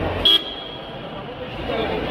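A single short vehicle horn toot a moment in, over the chatter of a crowd.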